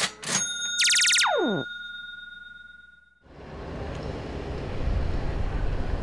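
A short electronic logo sting: two sharp clicks, then a quick synthesized sweep falling in pitch, with a ringing tone that fades out about three seconds in. A low steady rumble of city traffic then fades in and holds.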